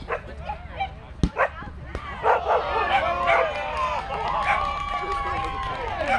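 Several people shouting and calling out across an open field, with one long drawn-out yell near the end; two sharp thumps come a little over a second in.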